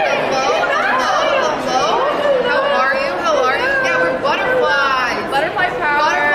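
Several people talking over one another, close and loud, with lively rising and falling exclamations; no other sound stands out.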